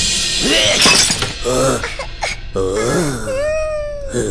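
A clay flowerpot shattering at the very start, followed by cartoon characters' wordless vocal sounds: short gliding grunts and exclamations, then one long rising 'ooh' near the end.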